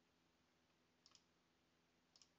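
Near silence with a quick pair of faint computer clicks about a second in.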